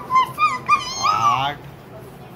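A dog whining: about four short, high yips in the first second, then one longer, wavering whine.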